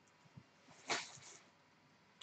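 Something falling in the room: a faint, brief clatter about a second in, with a small tick just before it.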